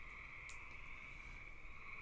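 A pause in speech: faint room tone with a steady high-pitched whine, and a single brief click about half a second in.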